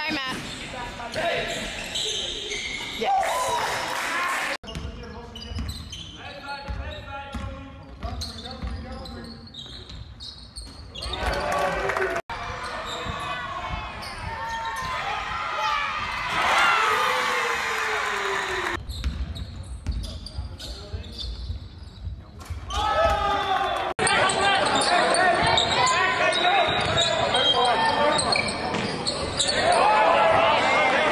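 Game sound from several basketball games in echoing gym halls: a ball dribbling on the court, with players and spectators shouting. The sound changes abruptly three times, at each cut between clips.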